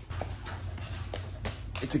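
A large dog's claws clicking on a hardwood floor as she walks, a handful of short sharp clicks, over a low steady hum.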